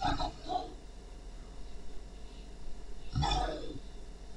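A person's voice making wordless groaning sounds: a few short ones at the start and one longer groan, falling in pitch, about three seconds in.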